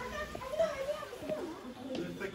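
Chatter of children's voices, high and lively, with no clear words.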